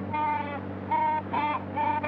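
A man imitating an animal with his voice, giving the mating call of a Himalayan yak: about four short, high cries in quick succession.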